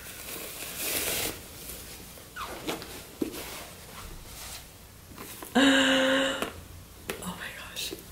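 Soft rustling and light handling noises as a purse is drawn out of a cloth drawstring dust bag, with a few faint clicks. Just past halfway a woman gives a short held 'ooh' of delight, the loudest sound here.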